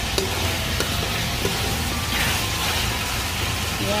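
Cubes of pork sizzling in a wok in their rendered fat and a little added broth, with a few light clicks and a brief surge of sizzle about two seconds in.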